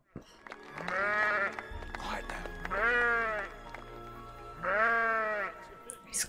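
A sheep on a film soundtrack bleating three times, about two seconds apart, calling to summon the flock. A low steady drone from the score comes in under the second call.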